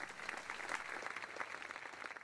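Audience applauding, with dense clapping at a moderate level that eases slightly toward the end.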